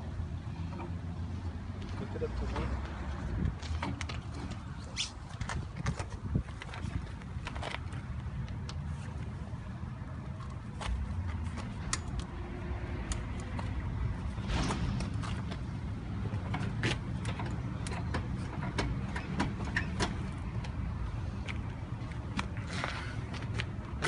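Scattered sharp clicks and small knocks over a steady low rumble, as a composite-body water meter clamped in a pipe vise is strained by hand.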